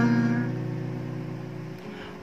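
An acoustic guitar chord from a single down strum rings on and fades steadily away, dying out near the end.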